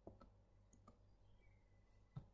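Near silence with a few faint, scattered clicks; the first, right at the start, is the loudest.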